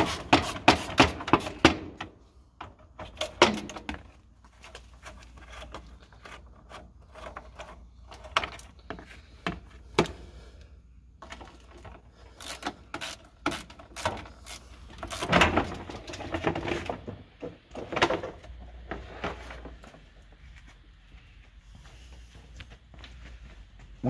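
Clicks and knocks of a 10 mm socket tool working the screws out of a Jeep Wrangler JK's plastic inner front fender. There is a quick run of clicks near the start, then scattered clicks and handling knocks, with a louder rattle about two-thirds of the way through.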